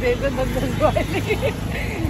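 People talking over a steady low rumble of road traffic.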